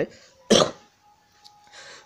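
A man clears his throat once with a short, sharp cough about half a second in. After that only a faint steady tone remains.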